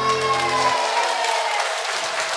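The band's final held chord dies away, its bass stopping about a third of the way in, while the audience claps.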